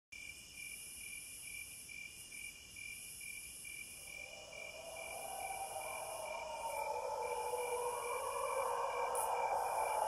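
Atmospheric song intro of high, evenly pulsing insect-like chirping, with a lower drone swelling up from about halfway through and growing louder into the start of the song.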